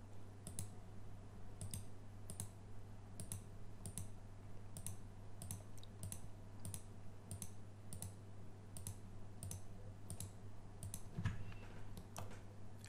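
Computer mouse button clicking at a steady pace, about one to two clicks a second, over a faint low steady hum.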